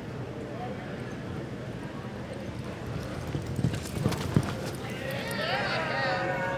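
A reining horse's hooves loping on arena dirt, with a few sharp hoof strikes at about three and a half to four and a half seconds as it stops and turns. Near the end a wavering high call rises and falls.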